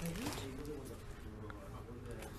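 A person's wordless voice: a low tone that rises in pitch just after the start, then holds with a wavering pitch for about a second.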